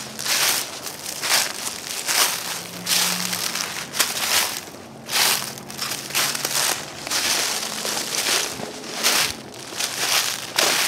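Footsteps crunching through deep dry leaf litter on a forest floor, one step about every second at a steady walking pace.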